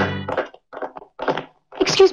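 Brass-band film score cutting off abruptly right at the start, followed by three short knocks about half a second apart.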